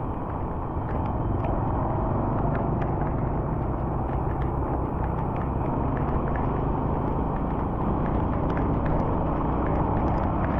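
Steady road noise of travelling along a wet highway in rain, dense and low, with faint scattered ticks throughout.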